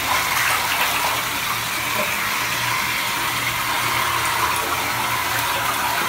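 LUSH Rocket Science bath bomb fizzing under bath water: a steady, even hiss of bubbles.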